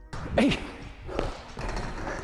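A man's shouted "Hey!" about half a second in, part of a recorded transition sound drop, over a rushing noise.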